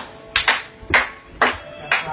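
Hands clapping in a steady beat, about two claps a second, over faint dance music.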